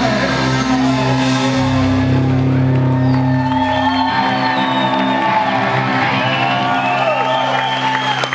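A live punk-rock band lets its last chord ring out at the end of a song while the crowd whoops and cheers. The lowest note drops out about halfway through.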